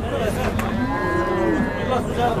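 A bull mooing once: one long call of about a second and a half that rises and then falls in pitch.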